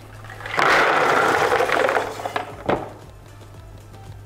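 Cooked tiger nuts and their cooking water tipped from a stainless steel pot into a plastic bucket: a rush of pouring lasting about two seconds, then a single knock.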